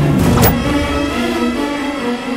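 Dramatic TV-serial background score of sustained orchestral chords, with a swoosh sound effect about half a second in.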